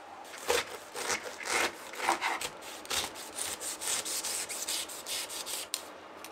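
Chef's knife sawing through a whole pineapple on a wooden cutting board, crunching and rasping through the tough rind. A few slow strokes come first, then quicker ones at about three or four a second, stopping just before the end.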